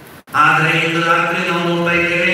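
A man's voice chants a liturgical prayer at the Mass. After a brief break it begins about a third of a second in, on long, level sung notes.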